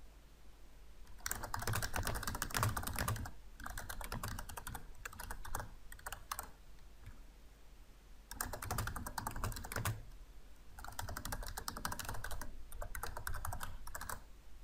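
Typing on a computer keyboard in quick runs of keystrokes: four bursts, the first about a second in, with a longer pause around the middle.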